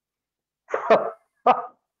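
A man starting to laugh: two short breathy bursts of laughter about a second in, the start of a laughing fit.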